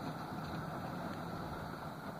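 Steady low background rumble, even and unchanging.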